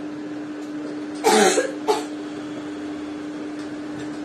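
A woman coughs twice in quick succession about a second in: a longer cough, then a short one. A steady electrical hum runs underneath.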